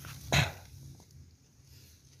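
A dog barks once, briefly, about a third of a second in.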